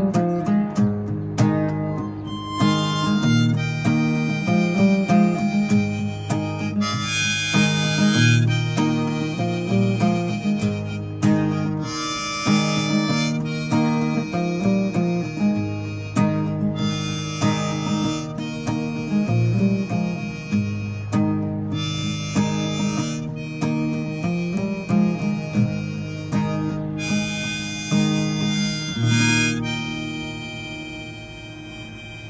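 Harmonica in a neck rack playing phrases of held notes over a strummed acoustic guitar, both from one player. The music dies away near the end.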